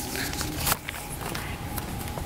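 Footsteps of a person walking away from a podium across a stage, a few separate taps of shoes on the floor.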